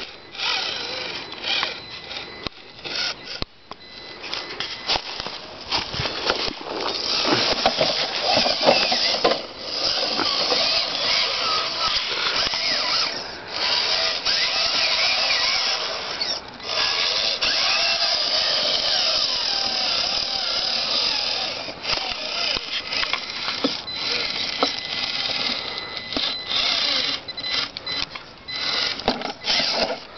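Electric drive motor and gearbox of a radio-controlled scale rock crawler whining as it climbs over rocks. The pitch wavers up and down with the throttle, in runs broken by brief stops.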